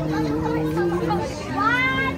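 Children's voices chattering and calling out over music with long held notes. A voice rises sharply near the end.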